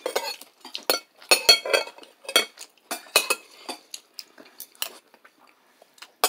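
Metal spoon clinking against a plate in a quick, irregular series of sharp clinks, some ringing briefly, thinning out and stopping about five seconds in.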